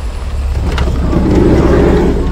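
Car engine sound effect, a low rumble that grows louder from about half a second in as the car pulls up close.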